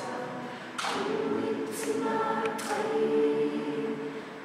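Choir singing a traditional Nama song a cappella, in harmony with held chords.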